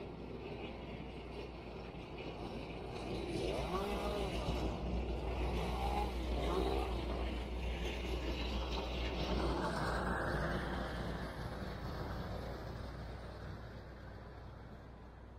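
Heavy engine of tree-service equipment running with a steady deep hum. It grows louder a few seconds in and fades near the end, with a few brief rises and falls in pitch in the middle.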